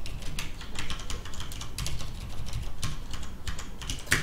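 Computer keyboard typing: irregular key clicks, about three a second, as a word is typed.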